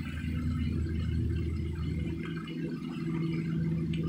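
A steady low mechanical hum, like a distant engine. Its lowest part fades about halfway through while a slightly higher steady tone carries on.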